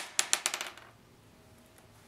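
A gaming die thrown onto the tabletop board, clattering in a quick run of clicks that die away within the first second as it settles.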